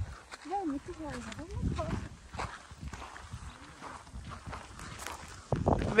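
Footsteps on a gravelly, salt-crusted lakeshore with wind rumbling on the microphone. Faint distant voices come through in the first couple of seconds, and close speech begins near the end.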